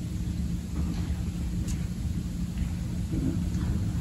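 Steady low rumble with a constant low hum underneath: room background noise in the pause.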